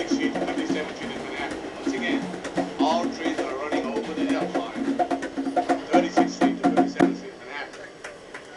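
Conga drums played by hand in a steady rhythm. The strokes grow louder and come in a fast run near the end, then stop about seven seconds in.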